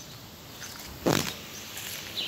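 A single short thump about a second in.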